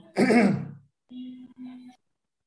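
A man clears his throat once, followed by two quieter, held vocal sounds.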